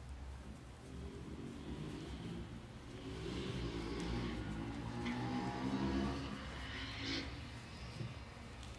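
A motor vehicle going past outside, its engine sound swelling through the middle and fading toward the end.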